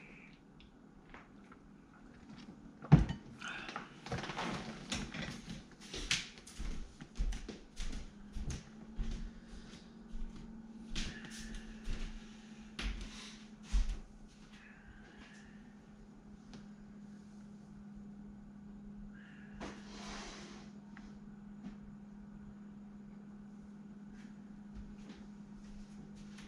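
Drawers and cupboards being opened and shut while someone rummages through them, with scattered knocks and clunks, the sharpest a few seconds in. Over the second half the clatter thins out and a low steady hum carries on.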